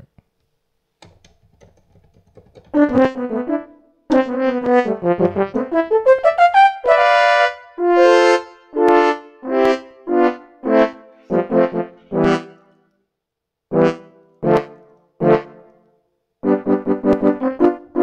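Sampled French horn from the Presence XT 'French Horn Bright' preset sounding notes and chords. There is a quick run whose pitch slides upward about six seconds in, then separate held notes, a few short stabs and a burst of repeated notes near the end, with short gaps between phrases.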